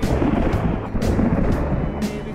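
A thunderclap breaks in suddenly and rumbles on, with a second crack about a second in.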